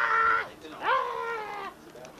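Two long, high-pitched wailing vocal calls. The first is held and breaks off about half a second in. The second swoops up, then sinks slowly and fades out near the end.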